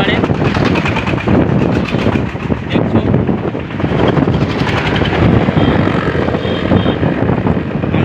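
Loud wind buffeting on the phone microphone while riding along a road, a continuous low rumbling rush.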